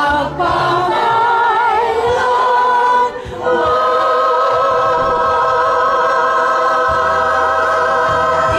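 A group of people singing together in unison. There is a short break about three seconds in, then one long held note to the end.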